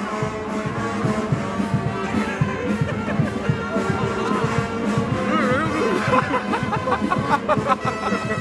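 Brass band music, carnival street-band style: horns holding long notes over a steady beat, with brief voices of people nearby.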